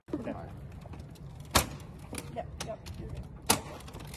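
Two sharp clacks about two seconds apart from an ambulance stretcher's metal frame as it is handled and set at height, over a low steady rumble.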